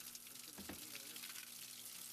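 Faint, steady trickle of newly fermented red wine draining from the opened door of a stainless steel fermentation tank into a plastic bin, with one small knock about two-thirds of a second in.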